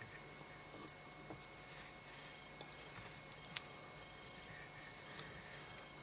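Faint rustling and a couple of small ticks from fingers handling fur and flash fibres on a fly held in a tying vise, over a faint steady hum.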